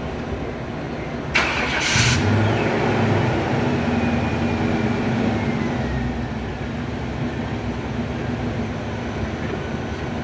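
Duramax 6.6 L LML V8 turbo diesel starting: a short loud burst of cranking about a second in, then the engine catches and runs. As it settles toward idle, a faint whine falls in pitch.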